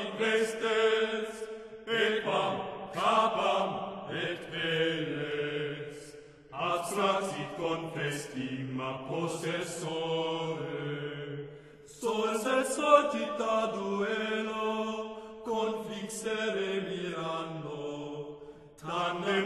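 Singers chanting a medieval Latin song in a plainchant style, one phrase after another with short breaks between them.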